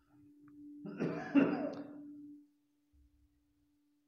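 A man clears his throat once with a short rough cough, about a second in, over a faint steady hum.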